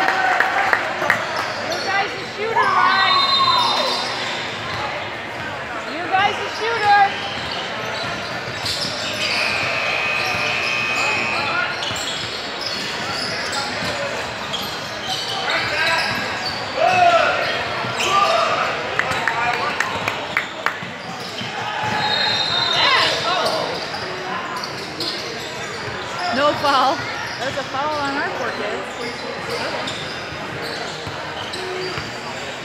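Basketball being dribbled and bounced on a hardwood court during play, with short high sneaker squeaks and players' voices calling out, all echoing in a large gym.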